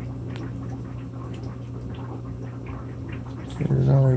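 Steady low hum of a small aquarium filter running, with faint light ticks of water over it. A man's voice starts speaking near the end.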